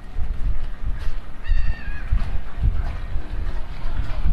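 A walker's footsteps on snow-covered pavement, low thuds at about two steps a second. About one and a half seconds in, a short high call sounds and dips slightly in pitch at its end.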